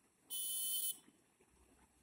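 A single high-pitched buzz, about half a second long, that starts and stops abruptly and is much louder than the faint background around it.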